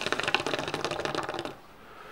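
Shisha (water pipe) bubbling as smoke is drawn through the hose: a fast run of small pops that stops about one and a half seconds in.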